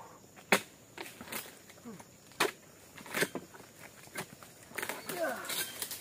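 Pole-mounted harvesting chisel (dodos) striking an oil palm's frond bases and fruit-bunch stalk: four sharp chops about a second apart, cutting the bunch free.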